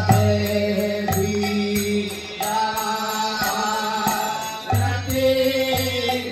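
Group devotional chanting (kirtan): voices singing a mantra together over a sustained drone, with a regular beat of hand cymbals and drum strokes.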